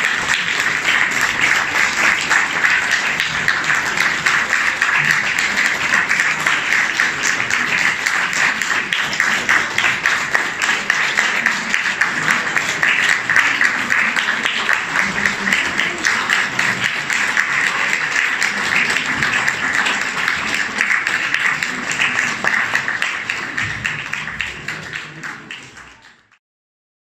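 Audience applauding steadily with dense clapping, fading out near the end.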